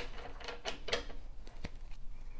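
Tarot cards being handled between shuffles: a few soft, separate clicks and taps of cards against each other and the table.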